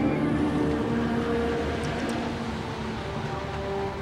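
Movie soundtrack: a steady low rumble of storm and boat noise, with long held notes of orchestral score that change pitch every second or so over it.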